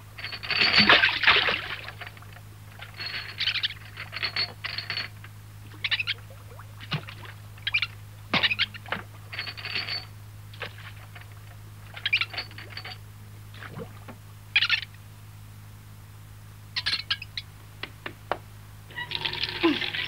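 Cartoon monkey sound effects: a run of short high squeaks and chatter, spaced a second or two apart, with a few sharp light taps among them, over a faint steady hum on the old soundtrack. Near the end a denser, steadier noise sets in.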